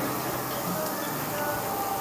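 Soft background music, faint and steady, with no clear sound from the chewing.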